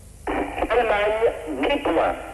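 A jury spokesperson's voice over a telephone line reading out a score, thin and narrow-band.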